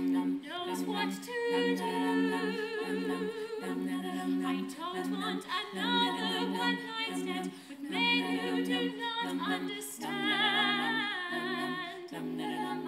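Women's a cappella group singing unaccompanied: sustained backing chords from several voices under a lead voice with wide vibrato, the chords changing every second or two.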